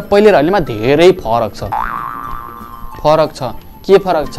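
A man talking animatedly, interrupted about two seconds in by a cartoon 'boing' sound effect: a quick upward twang that holds for about a second and then stops, before he speaks again.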